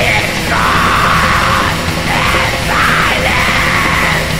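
Black metal song playing loud and dense, with distorted guitars and drums under harsh screamed vocals.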